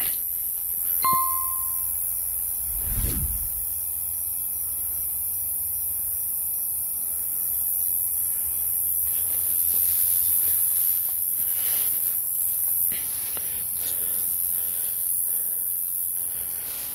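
Edited soundtrack with a steady high hiss: a short bell-like ding about a second in, then a deep falling boom at about three seconds, with faint rustles later on.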